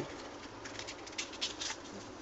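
Faint rustling and light crackles of a CD album's paper lyric insert and booklet being handled and folded shut, a string of short scrapes from about half a second in until near the end.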